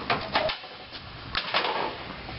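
Hard plastic water-cooler tops being handled and set aside, giving a few light knocks and clatters, a cluster near the start and another about a second and a half in.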